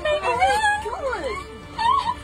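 A person wailing and sobbing in distress, the voice gliding up and down in pitch, over background music.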